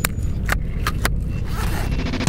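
Ski boot and ski binding clicking shut: four sharp plastic-and-metal clicks in the first second or so, over a steady low rumble.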